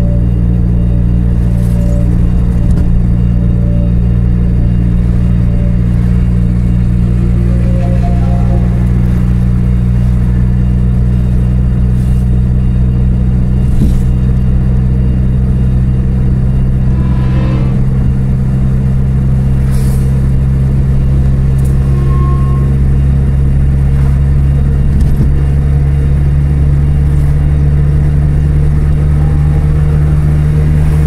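Steady low drone of a car's engine and tyre noise, heard from inside the cabin while driving at a constant speed.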